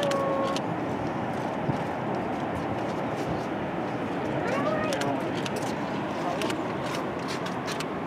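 Indistinct chatter of several people over a steady background rush, with a few snatches of voice a little before and after five seconds in.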